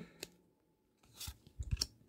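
Hockey cards rubbing and flicking against each other as a small stack is shuffled in the hands: a faint tick, then a short cluster of light scrapes and snaps in the second half.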